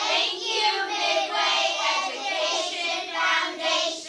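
A group of children calling out together in unison, many young voices at once, drawn out across about four seconds.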